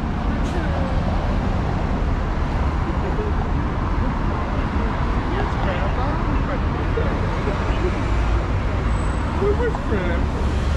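City street traffic passing through an intersection: a steady low rumble of car engines and tyres, with people talking in the background.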